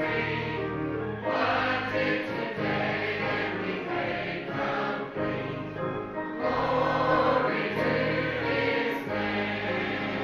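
A mixed church choir of men's and women's voices singing a hymn together, with long held notes that change every second or two.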